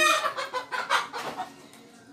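Hen clucking, a few short calls that die away after about a second and a half.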